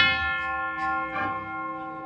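Cornet and drum band in the middle of a march: a sharp metallic strike at the start, then a long held chord that rings steadily, with a few light percussion taps.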